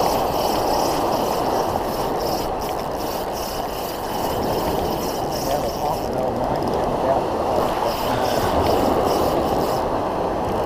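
Small ocean waves breaking and washing up the beach in the shallows, a steady rushing noise with no breaks.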